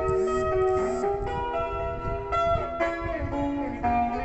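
Red hollow-body electric guitar played solo: a slow melodic line of single sustained notes, several of them bent or slid in pitch.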